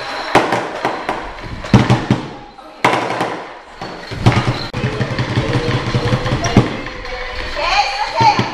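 Lion dance in progress: irregular loud thumps and sharp clacks, several close together at times, with voices in between.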